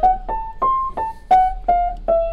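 A Feurich 122 upright piano played one note at a time: a short line of about six notes, each struck by its hammer and left to ring briefly before the next.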